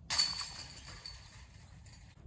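A disc golf disc strikes the chains of a metal basket, setting off a sudden jangle of chains that rings and dies away over about two seconds.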